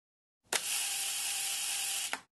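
A steady hiss lasting under two seconds, opened by a click and closed by another click.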